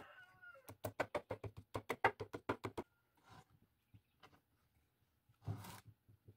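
Hands working a wooden clamping jig, wing nuts turning on its threaded rods: a quick run of light clicks, about seven a second, with a faint squeak at the start. Then a few scattered knocks and a short rustle near the end.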